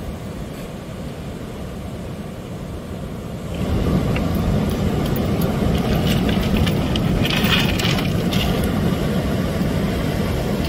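Steady low rush of ocean surf, growing louder about three and a half seconds in, with a spell of clattering beach pebbles under footsteps in the second half.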